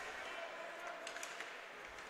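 Faint hockey-arena ambience heard through the broadcast microphones during a gap in the commentary: distant crowd murmur and voices, with a few faint taps.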